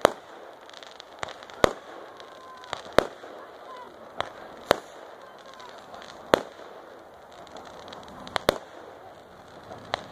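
Fireworks going off: about ten sharp bangs from aerial shells bursting at irregular intervals, the loudest a little past the middle.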